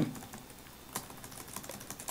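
Faint, irregular keystrokes on a computer keyboard, with one sharper click about a second in.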